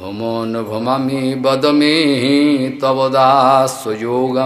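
A man chanting a Sanskrit verse in a melodic, drawn-out intonation, holding long notes with a waver in pitch near the end.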